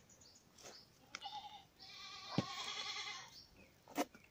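A goat bleating: a short call about a second in, then a longer, louder, wavering bleat.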